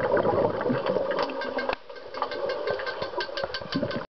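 Underwater hockey scrum heard through the water at an underwater camera: a dense muffled churning of water and bubbles from players' kicking fins, with many sharp clicks and clacks from sticks and puck on the pool floor. The churning briefly drops away a little before the halfway point, then picks up again.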